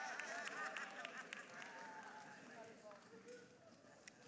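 Congregation getting to its feet: a faint murmur of many voices with scattered small knocks and shuffling, dying away over a few seconds.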